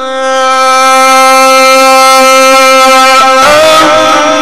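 Male Quran reciter's voice holding one long, steady note in the Egyptian tajweed style, then moving to a slightly higher note about three and a half seconds in.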